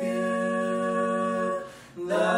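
Mixed a cappella vocal quartet, two men and two women, holding one steady chord of a hymn. It fades out about a second and a half in, leaving a short breath gap.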